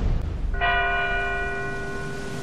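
A deep, rumbling boom fades out, then about half a second in a bell is struck once and rings on with a slowly fading, many-toned ring.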